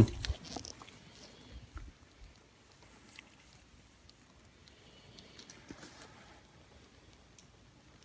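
Quiet room with a few faint, scattered ticks and soft rustles from gloved hands pressing gauze and a small extractor tool against skin.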